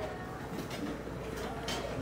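Hot coffee pouring from a dispenser tap into a paper cup, a quiet, steady stream of liquid.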